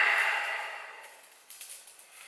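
Faint light clicks of bonsai wire being handled as a new gauge is picked up.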